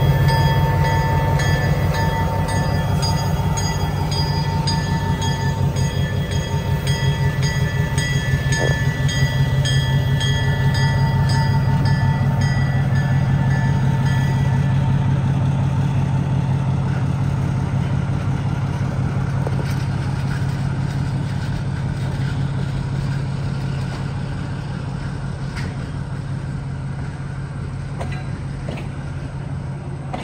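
Canadian National diesel switcher locomotive running as it passes, its engine giving a steady, pulsing drone that slowly fades toward the end. For the first half, its bell rings in an even rhythm, then stops.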